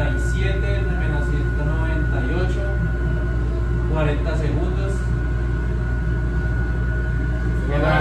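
Steady low hum of a nitrogen cryotherapy cabin running during a session, with a thin steady high tone that stops about three and a half seconds in. A man's voice comes and goes over it in short wordless sounds.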